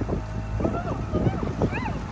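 Dinghy outboard motor running under way, with wind noise on the microphone and voices calling out over it.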